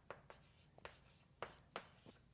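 Faint writing sounds: about five short, separate strokes of a writing implement on a writing surface.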